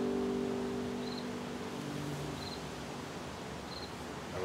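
The final chord of an acoustic guitar ringing out and fading away over the first two or three seconds, leaving a low background hiss. A faint high chirp repeats about every second and a quarter.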